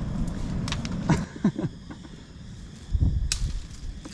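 Dry twigs and bare branches cracking and snapping as a person pushes and steps through brush, with rustling and low bumps from handling.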